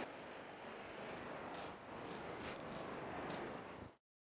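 Faint beach ambience: a steady wash of surf noise with a few faint brief ticks, cutting off suddenly just before the end.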